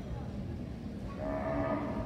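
A Brahman cow moos once, a single call of under a second in the second half, over the low background din of a crowded show arena.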